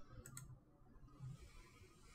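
Near silence: faint room tone with two small clicks about a quarter and half a second in.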